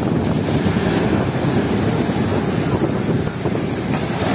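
Strong waves breaking and washing in foam over a sandy shore, a steady rush of surf, with wind buffeting the microphone.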